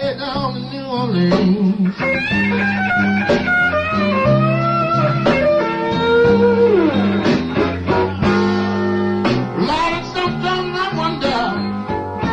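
Live blues band playing a slow blues, with a lead electric guitar sustaining and bending notes over bass, drums and rhythm guitar.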